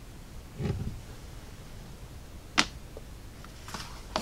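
Small handling sounds on a hobby workbench: a soft bump about half a second in, then a sharp click at about two and a half seconds and a fainter one near the end, as a paintbrush and small wooden model parts are set down on a cutting mat.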